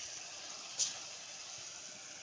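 Chopped broad beans and tomato sizzling in an aluminium pressure-cooker pot, a steady hiss with one short sharp crackle a little under a second in.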